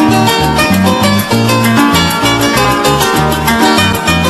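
Instrumental passage of Venezuelan-Colombian llanera music (joropo): plucked strings over a moving bass line and a fast, even shaker rhythm, with no singing.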